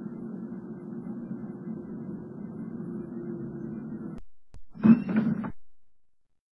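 A steady, muffled low rumble that stops abruptly about four seconds in. A click and a short, loud burst of noise follow about a second later.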